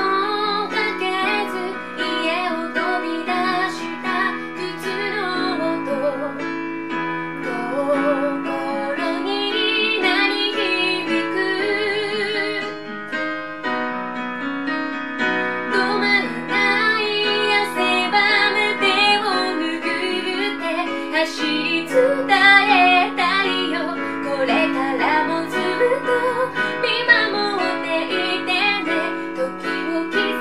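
A woman singing while accompanying herself on a Roland FP-50 digital piano, playing sustained chords under the sung melody.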